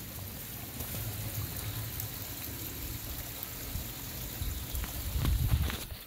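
Koi pond water trickling and running steadily, with a low rumble swelling near the end.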